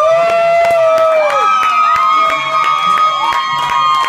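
Crowd cheering: several people letting out long, high-pitched cries that overlap, each sliding up at the start and down at the end, with scattered claps among them.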